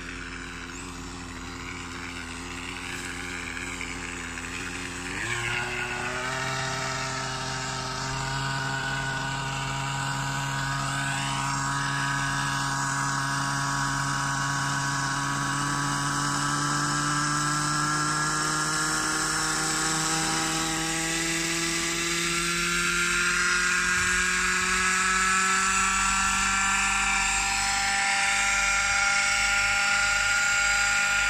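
Hirobo Eagle radio-controlled helicopter's nitro engine running, jumping up in speed about five seconds in, then rising slowly and steadily in pitch as the rotor spins up for lift-off.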